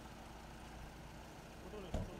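A car door slams shut with one sharp thump near the end, over a low steady rumble from the car standing close by.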